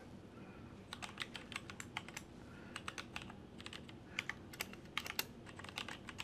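Typing on a computer keyboard: quiet, irregular keystrokes starting about a second in.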